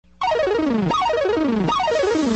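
Heavily distorted, effect-laden logo jingle music that cuts in abruptly after a split second of silence, with three falling pitch sweeps in a row, each about three-quarters of a second long, over a chaotic wash of sound.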